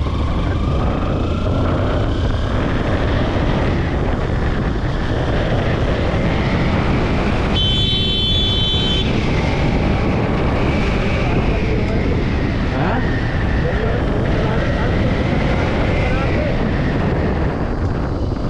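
Sport motorcycle accelerating hard at wide-open throttle, its engine note climbing over the first few seconds and holding high before easing off near the end. Heavy wind rushes over the microphone. A brief high tone cuts in about eight seconds in.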